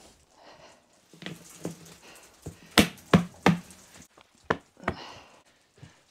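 The snap-on plastic lid of a bokashi compost bucket being fitted and pressed down: a few sharp plastic clicks and knocks from about three seconds in, after some soft rustling.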